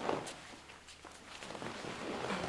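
A few soft footsteps on a hard floor as someone gets up and walks across a room.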